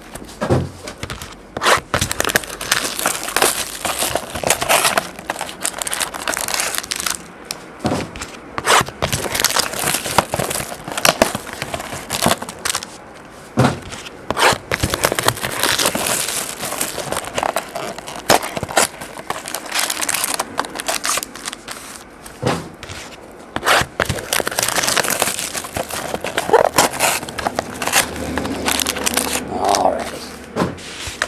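Plastic and foil wrapping on a hobby box of trading-card packs being torn open and crumpled by hand: a long string of irregular crinkles and rustles.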